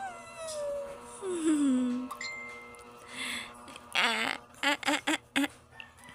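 A young baby cooing: drawn-out coos that glide up and down in pitch, then a quick run of short voiced sounds about four seconds in.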